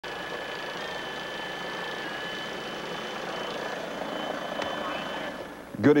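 Steady helicopter noise: an even rush with a thin, high, steady whine. It fades just before a man starts speaking at the very end.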